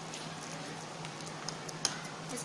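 Fork mashing boiled egg and mayonnaise on a plate, with a couple of sharp clicks of the fork against the plate near the end, over a steady low hum.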